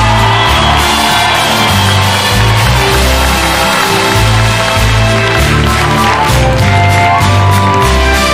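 Instrumental break in a live pop ballad, with no vocals: a bass line stepping from note to note under sustained chords.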